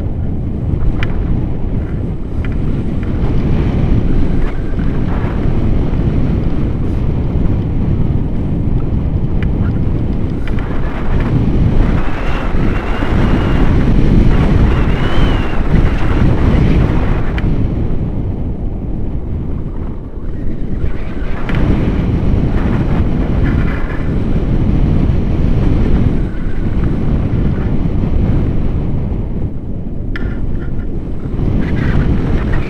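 Airflow buffeting the microphone of a selfie-stick camera on a paraglider in flight: a loud, steady low rumble that swells and eases, heaviest around the middle.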